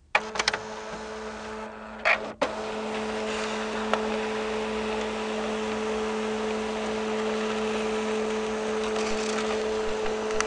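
A steady mechanical hum, two low droning tones over an even hiss, that starts abruptly. A few sharp clicks sound in the first half-second, a short louder burst of noise comes about two seconds in, and another click follows shortly after.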